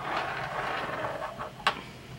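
Hands smoothing and laying out a knitted piece on a circular needle across a tabletop, a soft rustling rub of yarn and skin on fabric and table, ending in one sharp click about a second and a half in.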